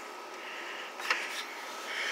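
Low background hiss with one faint, short click about a second in as scrap metal computer cases are handled.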